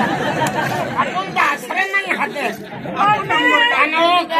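Speech: people talking in quick spoken exchanges, with no other sound standing out.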